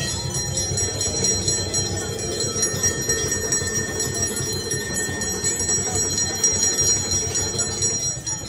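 Brass temple bells ringing on and on, several clear tones overlapping and sustained, over the low murmur of a crowd.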